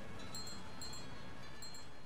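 Quiet close of a pop song's recording: high chime-like tinkles coming in quick pairs, repeating a few times over a faint low background.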